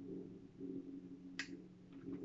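A drink sipped from a small glass, faint, with one short sharp click about one and a half seconds in, over a steady low hum.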